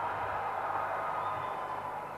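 Crowd noise from a large audience, a dense even murmur that slowly dies away, over a faint low steady hum.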